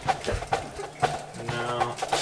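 A few light knocks of kitchen handling as a burger is assembled on a cutting board, then a steady held musical note in the background for about half a second near the end.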